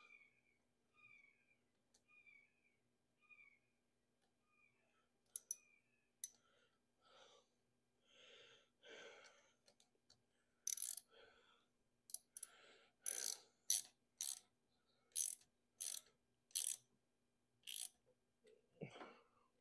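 A hand tool tightening a hose clamp on a coolant hose: short clicking strokes, sparse at first, then louder and about one or two a second in the second half.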